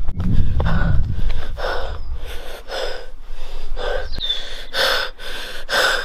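A person panting hard close to the microphone, heavy out-of-breath gasps about once a second, with a low rumble of handling or wind noise under the first few seconds.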